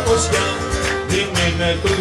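Cretan lyra and guitar playing a traditional Cretan tune live, the lyra carrying a wavering melody over the strummed guitar; a male voice comes in singing near the end.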